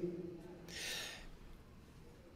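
The trailing end of a man's spoken word, then a short, faint breath about a second in between his phrases.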